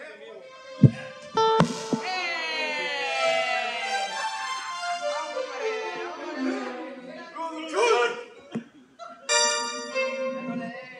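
A live band's keyboard sounding between songs: two sharp thumps about a second in, then a long held note that slides down in pitch, and a steady chord near the end.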